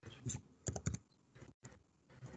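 Faint computer-keyboard typing: a handful of short, irregular key clicks, mostly in the first second.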